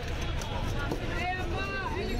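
Men's voices talking over a steady low rumble.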